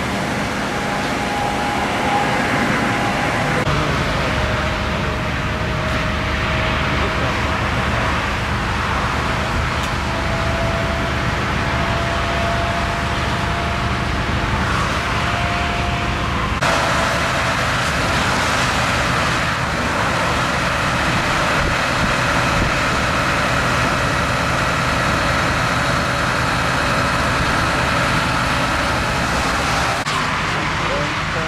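Steady rumble of vehicle engines and motorway traffic, with low hum and a faint thin tone drifting slowly upward in pitch. The background changes abruptly twice.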